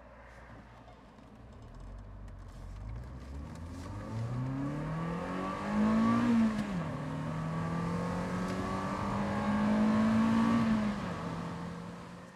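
MGF's Rover K-series four-cylinder engine accelerating, its note climbing steadily, then dropping abruptly at a gear change a little over six seconds in. It climbs again more gently before easing off near the end.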